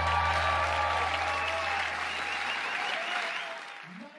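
Live audience applauding at the end of a song, while the band's last held chord fades out over the first three seconds; the applause fades away near the end.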